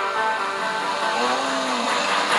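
Film-teaser background music over a rushing noise, with a short low tone that rises and falls near the end.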